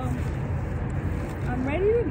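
Steady low outdoor rumble, with a woman's voice starting near the end and rising in pitch.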